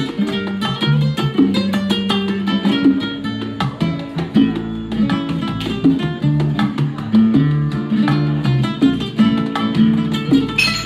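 Live Cuban music with an acoustic guitar playing quick picked runs over electric bass and bongos.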